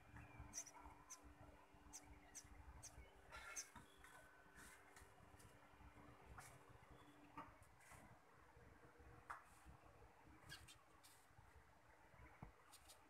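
Near silence: faint outdoor ambience heard through a window, with scattered faint high chirps and a low steady hum that stops about seven seconds in.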